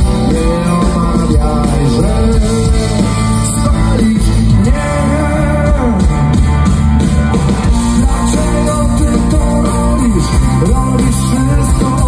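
Live rock band playing: electric guitars, bass and drum kit, with a male lead singer's voice over them.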